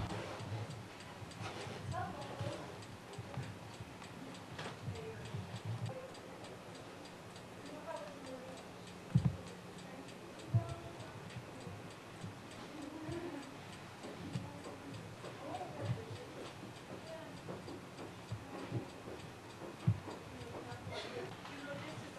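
Steady faint ticking in a quiet room, with a few sharp knocks and faint distant voices.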